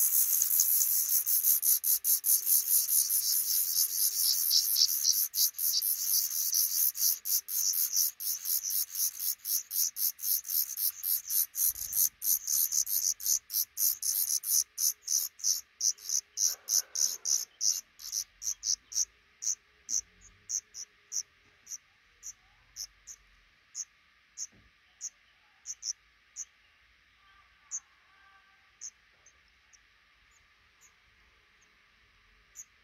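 Black redstart nestlings begging at a parent's feeding visit: a sudden burst of rapid, high-pitched cheeping that slows and thins out over about twenty seconds to scattered single calls.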